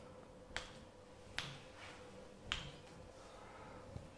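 Three sharp joint cracks, about a second apart, as a chiropractor manipulates a patient's arm, wrist and hand, over a faint steady room hum.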